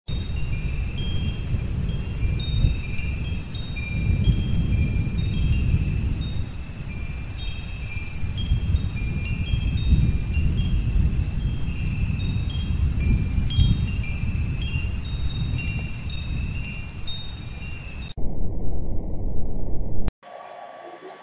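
Wind chimes tinkling in short, scattered high notes over a steady low rumbling noise. The chimes stop about two seconds before the end, leaving only the rumble.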